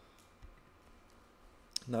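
Two faint computer keyboard clicks over quiet room tone: a soft one about half a second in and a sharper one near the end.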